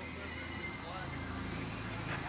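Faint distant voices over a low, steady background hum, with a thin steady high tone running underneath.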